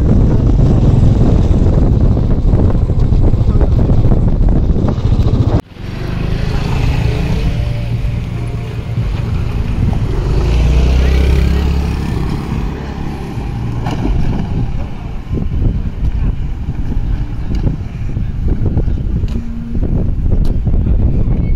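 Loud wind and road noise from riding in a moving vehicle. About six seconds in it cuts off suddenly and gives way to a lower, steady rumble of wind on the microphone outdoors.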